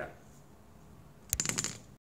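A sharp click followed by a quick cluster of clicks and knocks, lasting about half a second, a little past the middle: the recording device being handled close to the microphone as the recording is stopped.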